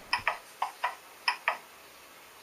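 Six short, sharp metallic clicks in three pairs, each with a brief ring, in the first second and a half.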